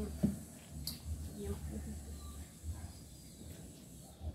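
Quiet handling of banana leaves as a small tamal is folded by hand, with one sharp knock about a quarter second in, over a low steady hum and faint voices.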